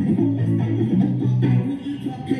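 Electric guitar playing low, ringing notes in a live performance; the low notes stop shortly before the end.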